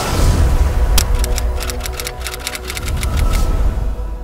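News-channel logo ident music: a heavy deep bass with a few held tones, and a rapid run of sharp crackling clicks from about a second in that thins out near the end.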